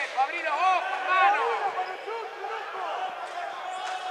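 Indistinct voices in a basketball gym, people calling out, loudest in the first two seconds and fainter after.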